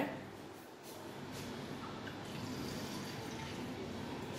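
Faint, steady running water from a kitchen tap filling a plastic measuring jug, starting about a second in.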